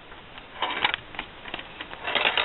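Perplexus Rookie maze sphere turned in the hands, its small metal ball rolling and knocking along the plastic tracks inside. A run of light clicks and short rattles, densest a little over half a second in.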